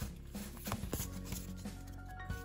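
Quiet background music, with a few soft clicks and slides of trading cards being handled.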